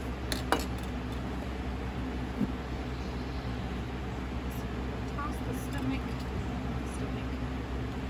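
Knife blades knocking against a glass tabletop while raw chicken is cut up: a sharp clink about half a second in, a softer one about two and a half seconds in, and a few faint ticks later, over a steady low hum.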